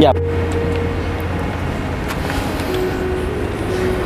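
Steady low rumble of a motor vehicle, like an engine running or traffic passing, with faint held tones over it.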